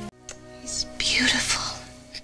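Soft whispering over quiet background music with steady held tones.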